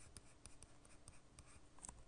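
Faint taps and light scratching of a stylus writing on a tablet.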